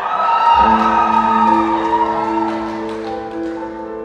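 Grand piano playing sustained chords in a concert hall, with a swell of audience cheering and a few claps over the first three seconds that fades out.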